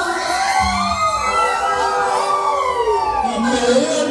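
Several voices wailing and shouting together in long, overlapping cries that slide up and down, one of them a man yelling into an amplified microphone while a crowd joins in.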